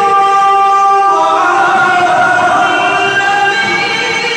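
A man's voice in melodic Quran recitation (tilawat), holding long drawn-out notes that change pitch about a second in.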